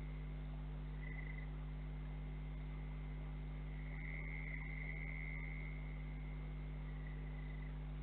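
A high thin trilling call from a night-calling animal, swelling briefly about a second in, longest from about four to six seconds in, and briefly again near the end, over a steady low electrical hum.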